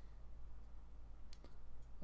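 Two faint clicks of a computer mouse button, the first about a second and a half in and a softer one near the end, over a low steady hum.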